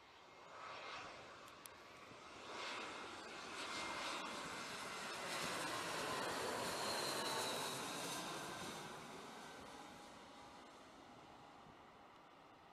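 Airbus A320-family twin-jet airliner on final approach, its engine noise swelling as it passes low overhead, loudest about halfway through, then slowly fading as it flies away.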